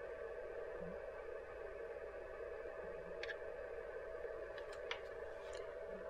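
Low steady hum with one faint constant tone, and a few soft, light clicks in the second half.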